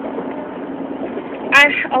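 Steady hum inside a car cabin, with a constant low drone under it. A woman's voice comes in near the end.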